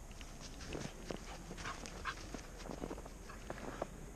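Dogs playing in snow: paws crunching through the snow, with a few brief vocal sounds from a dog near the middle.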